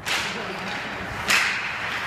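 Ice hockey skate blades scraping on the ice during a faceoff and rush, with one loud, sharp slap a little over a second in from a stick striking the puck.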